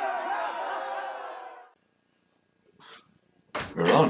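The intro's sound of many overlapping voices shouting fades out over the first second and a half. After a short silence comes a brief faint sound, then a sudden thump with a short voice sound near the end.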